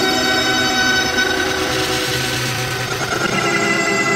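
Heavily effects-processed, layered audio from a "Preview 2" effects edit: many steady tones sound together as one long held chord, with no speech-like breaks.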